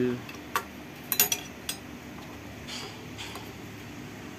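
A few light metallic clicks and taps of a hand tool working the cap on a motorcycle engine's flywheel side cover, loosening it so the flywheel can be turned for timing. The loudest cluster comes about a second in.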